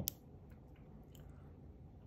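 A 1 mm neodymium disc magnet clicks onto a SIM card, snapping against the magnet on its other side, just after the start, followed by a few faint clicks of fingers handling it.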